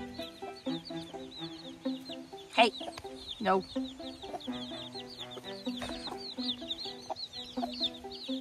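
Backyard chickens clucking in their pen, with rapid short, high, falling chirps throughout and two louder calls about two and a half and three and a half seconds in.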